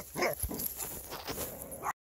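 A dog gives a short bark about a quarter second in, followed by fainter scattered sounds and a brief small yip near the end.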